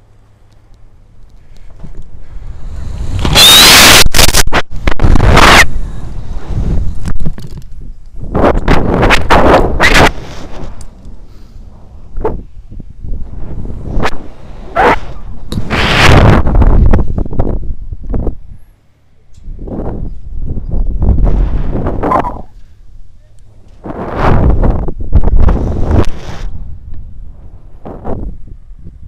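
Wind rushing over the camera's microphone during a rope jump's free fall and pendulum swings: loud buffeting that builds about three seconds in, then returns in surges every couple of seconds as the jumper swings on the rope.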